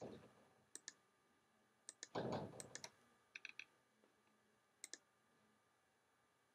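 Faint computer mouse clicks, several in quick press-and-release pairs. A short half-second burst of noise about two seconds in is the loudest sound.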